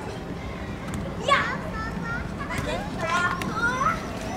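Children's high voices shouting and calling out, with a sharp cry about a second in and a run of calls near the end, over steady low background noise.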